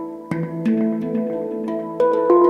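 Handpan tuned to the Japanese Akebono scale, played with the hands: struck notes ringing and overlapping in a slow melody, with a strong stroke about a third of a second in.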